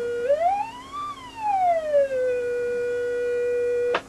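EICO audio tone generator putting out a sine-wave tone, steady at first, then swept smoothly up by more than an octave and back down within about two seconds, then held steady again until it cuts off suddenly at the end.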